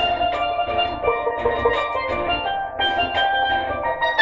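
Steel pan struck rapidly with mallets, playing a reggae melody in quick runs of bright ringing notes. A low bass and drum accompaniment runs underneath.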